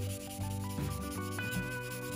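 A 3000-grit sanding sponge or paper rubbing back and forth over the grey-primed plastic body of a model car, a fine scratchy hiss, smoothing out dust spots in the primer. Background guitar music plays underneath.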